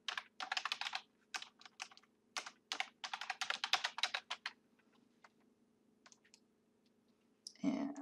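Typing on a computer keyboard: a quick run of keystrokes for about four and a half seconds, then a few scattered single clicks.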